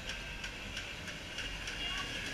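Faint outdoor background at a small kart track: a steady low hum and haze with a light, regular ticking about three times a second.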